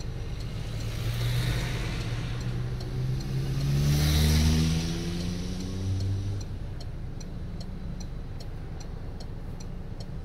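A motor vehicle pulling away and accelerating past, its engine pitch rising and loudest about four seconds in, heard over the low idle of a stationary car from inside its cabin. Once it fades, a steady quick ticking of the car's turn indicator.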